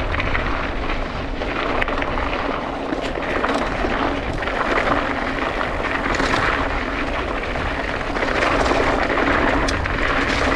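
Mountain bike descending loose, rocky singletrack: a steady rush of wind over the camera microphone, with the tyres crunching over gravel and rock and many short rattles and clicks from the bike.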